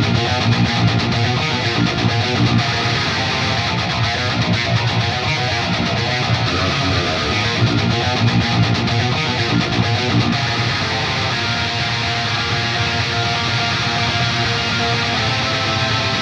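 Heavily distorted metal rhythm guitars playing a riff through the Neural DSP Fortin Nameless amp-simulator plugin, the main pair hard-panned left and right. A second, rawer high-gain pair (the quad tracks) is switched in and out, filling out the sound.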